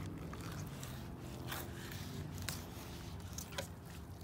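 Rapala fillet knife sliding through a fresh coho salmon's flesh along the backbone, with a few faint crackles as the blade passes over the rib bones.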